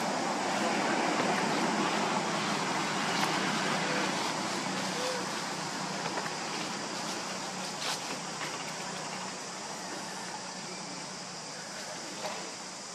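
Steady, rushing outdoor background noise that slowly fades, with a few faint clicks.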